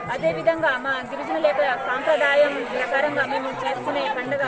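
Speech: a woman talking steadily.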